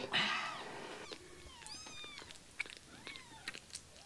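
Newborn kitten mewing several thin, high-pitched cries while being bottle-fed, the first the loudest and the rest faint. A few small clicks fall between the cries.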